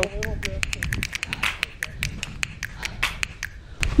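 Footsteps on a dirt trail covered in dry leaves: quick, irregular crackles and clicks, several a second, over a low rumble.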